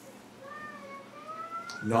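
A cat meowing in a long, drawn-out call that slowly rises in pitch, fairly faint.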